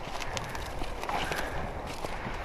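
Footsteps crunching through dry, freshly cut corn stubble, with an irregular crackle and rustle of stalks underfoot.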